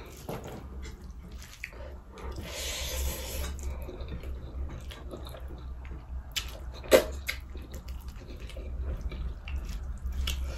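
Close-up wet eating sounds of rice and curry eaten by hand: fingers squishing and mixing rice with curry on the plate, and chewing. A sharp click about seven seconds in.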